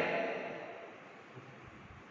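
The end of a man's spoken word dying away with classroom echo, then faint room tone with one small knock about 1.4 seconds in.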